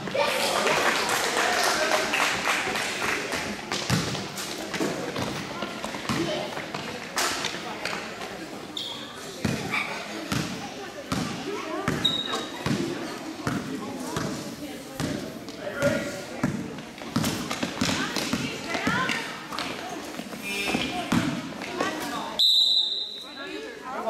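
Basketball dribbled on a gym floor, with a run of steady bounces about two a second in the middle stretch, over voices of players and spectators echoing in a large hall. Brief high sneaker squeaks come through now and then, one longer near the end.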